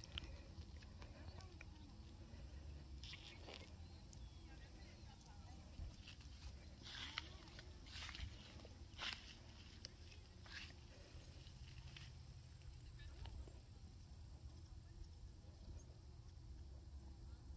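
Near silence outdoors: a faint low rumble throughout, with a few soft short rustles or steps in the middle, the clearest about seven and nine seconds in.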